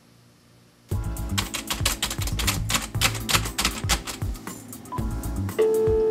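Rapid, irregular clicking of keys at an office desk over background music, starting about a second in after a moment of near silence. A steady held tone comes in near the end.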